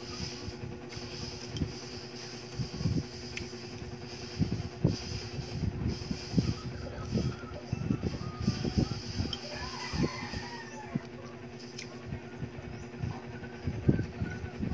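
Close-up eating sounds: chewing and soft, irregular mouth smacks of a person eating fried fish and rice by hand, over a steady background hum.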